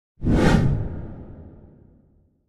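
A whoosh sound effect for a logo card: it starts sharply about a quarter second in and fades away over the next two seconds.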